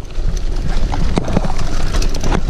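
Mountain bike rolling fast down a dirt forest trail. Tyres run over packed earth and dry leaves while the bike rattles in quick, irregular knocks over bumps, above a steady low rumble.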